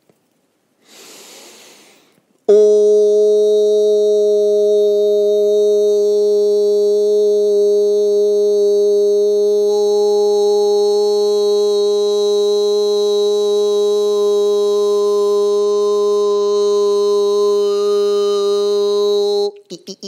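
A man's voice holding one long vocal tone at a single steady pitch for about seventeen seconds, entered after an audible in-breath; it starts and stops abruptly.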